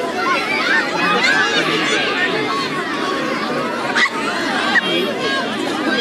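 Crowd of children chattering and calling out together in many overlapping high voices, with a couple of brief sharp knocks about four and five seconds in.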